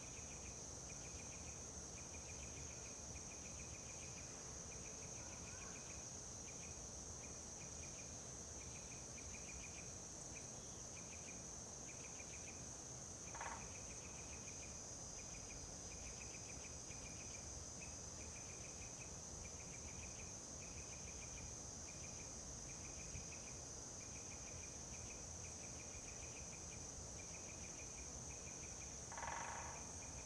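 Autumn insects: a steady high-pitched drone with crickets chirping over it in rapid pulsed runs. Two brief louder sounds cut in, about halfway through and near the end.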